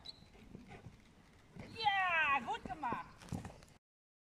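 A loud high-pitched cry falling in pitch, about half a second long, followed by a couple of shorter cries and a few knocks; the sound cuts off abruptly just before the end.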